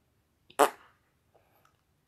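One short, breathy mouth noise from a man, about half a second in, lasting about a quarter of a second.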